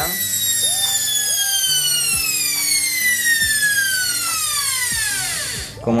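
French-made washing-machine universal motor coasting to a stop: a high whine with many overtones falling steadily in pitch. It dies away just before the end.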